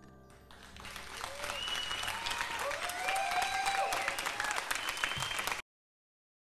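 A studio audience applauding and cheering as the last sustained notes of the song die away. The applause builds up about half a second in, with whoops over the clapping, and cuts off abruptly near the end.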